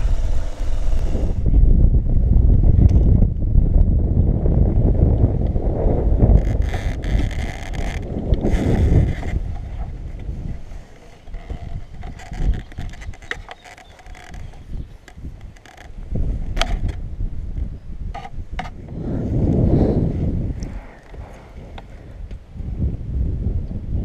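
Wind buffeting the microphone over the low rumble of a motorcycle moving slowly, for about ten seconds. Then it goes quieter, with scattered clicks and knocks of the camera being handled, and a short swell of rumble comes back near the end.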